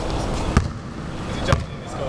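A basketball bouncing twice on the sports hall floor, about a second apart, over steady room noise.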